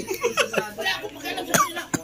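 A person coughing among the voices of a small group, in short, choppy bursts with two sharp hacks near the end.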